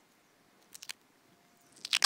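Adhesive tape being pulled off its roll: three short crackles a little over half a second in, then a louder rip starting near the end.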